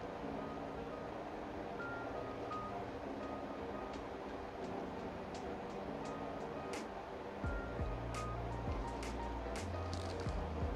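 Soft instrumental background music with sustained notes. A deep bass comes in about three-quarters of the way through.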